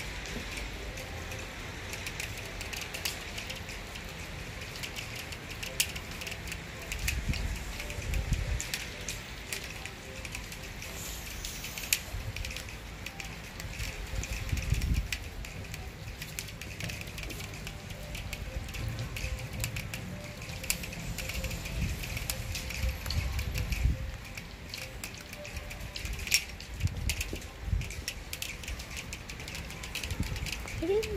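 Wet snow falling outdoors, with light scattered pattering and crackling clicks over a steady hiss, and occasional low rumbles on the microphone.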